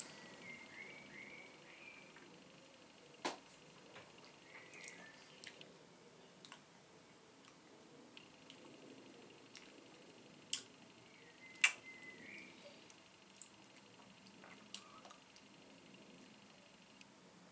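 Faint mouth sounds of someone tasting beer from a glass: a sip and swallow, then soft lip smacks and a few short sharp clicks scattered through, the loudest about a third of the way in and two close together past the middle.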